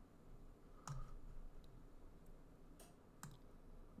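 A few faint computer mouse button clicks against near-silent room tone.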